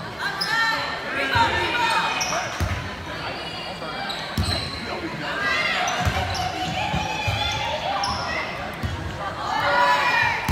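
Indoor volleyball rally in a gym's echo: the ball thuds off players' arms and hands several times, sneakers squeak on the hardwood floor, and players and spectators call out.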